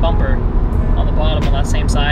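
A man talking over steady low road and engine noise inside the cabin of a moving second-generation Mazdaspeed 3.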